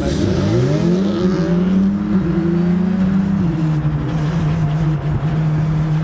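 Skoda Fabia RS Rally2's 1.6-litre turbocharged four-cylinder engine driving on track: it climbs in pitch over the first second or so, then holds nearly steady, dropping a little about three and a half seconds in.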